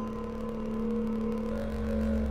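Generative modular synthesizer drone from sine-wave oscillators run through Mutable Instruments Rings, Beads and Warps and ARP 2500-style ring modulation: a steady mid tone with a slowly wavering higher tone above it, joined by a deep low tone about one and a half seconds in.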